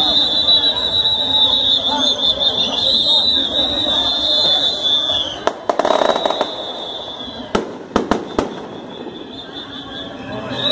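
A steady high-pitched whine that stops about five seconds in, then a loud noisy burst, then four sharp bangs in quick succession around eight seconds in, over crowd voices.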